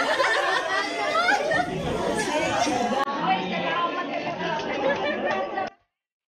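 Chatter of several people talking over one another around a dinner table, cutting off suddenly near the end.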